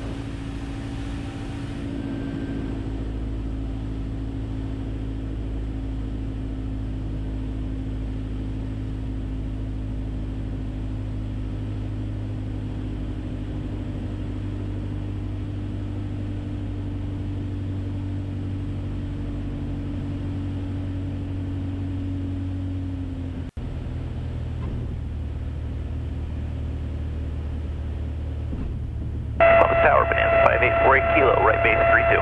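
Steady drone of a 1966 Mooney M20E's four-cylinder Lycoming engine heard from inside the cabin on final approach. The sound drops out for an instant about three quarters of the way through, then carries on with a slightly different pitch.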